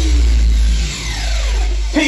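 DJ mix transition: the music sweeps downward in pitch, several tones gliding down together over a held bass that fades about halfway through, with the next track cutting in at the very end.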